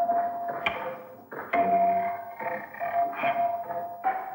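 Music of struck pitched percussion: a slow, uneven run of single notes, each starting sharply and ringing on.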